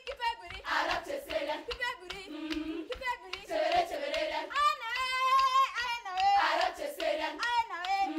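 Teenage girls' choir singing a Marakwet folk song, with hand claps among the voices.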